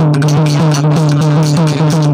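Instrumental passage of a devotional bhajan: a two-headed hand drum and other percussion keep a quick, even rhythm over a steady low drone.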